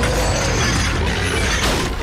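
Heavy metal chain rattling and clanking as it is dragged and swung, with a heavy impact about one and a half seconds in.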